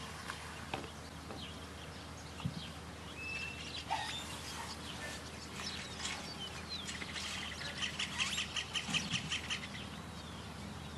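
Birds chirping and calling, with a brief whistled note about three seconds in and a fast run of chattering notes near the end.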